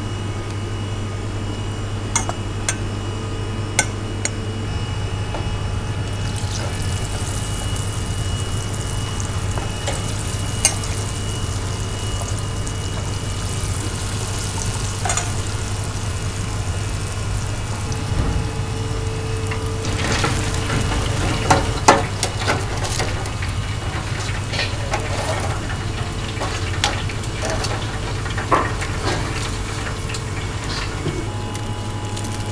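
Battered meat deep-frying in oil in an electric deep fryer, a dense, steady sizzle that comes in about six seconds in, over a low hum. Earlier, metal tongs stir in a steel bowl of batter; in the last third there are sharp clinks and clatters of metal tongs on the basket and rack.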